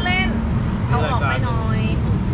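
Mostly speech: voices talking in two short stretches over a steady low background rumble.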